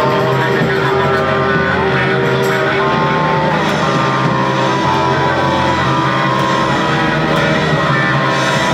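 Live band playing loud, dense rock with guitar, held droning notes sounding steadily underneath.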